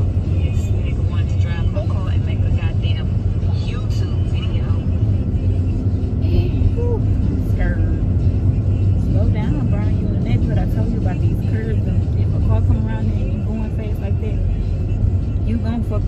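Steady low rumble of a car's engine and tyres heard inside the cabin while driving, with faint snatches of talk over it.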